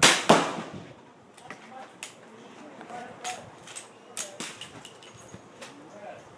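Two loud gunshots about a third of a second apart, the first from a .357 Magnum lever-action rifle fired at the bench. Several fainter sharp cracks and clicks follow over the next few seconds.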